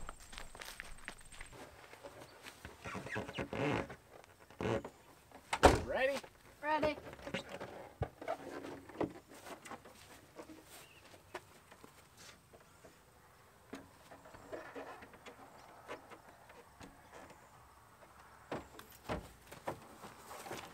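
Handling noise of a paddleboard being carried and loaded onto a car's roof rack: scattered knocks, rustling and footsteps, with short stretches of voices. The loudest knock comes a little under six seconds in.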